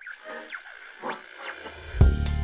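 Sound effects for an animated logo intro: a few short sweeping swishes, then a low swell building near the end as the intro music is about to start.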